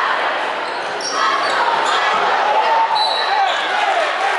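Gym crowd noise during a basketball game: many voices calling and shouting over the dribble of a basketball on a hardwood floor, with short high squeaks about a second in and near the end.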